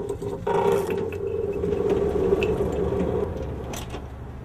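Fluorescent ceiling light fixture being handled: metal clicks and rattles over a steady hum that starts suddenly about half a second in and dies away after about three seconds.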